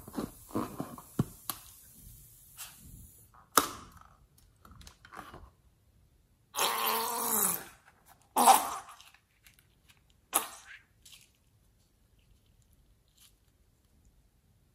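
Hands squeak and rub against a slime-coated rubber balloon. About halfway through comes a second-long sputtering spurt as the squeezed balloon empties its liquid slime into a glass bowl, followed by two short wet splats, then quiet.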